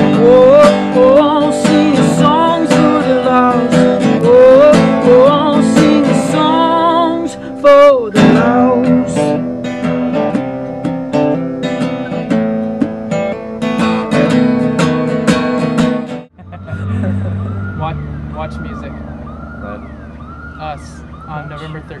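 Acoustic guitar and voice play out the end of a song. About 16 seconds in it cuts off suddenly, and a siren takes over with a quick rise-and-fall wail that repeats a little faster than once a second over a low steady hum.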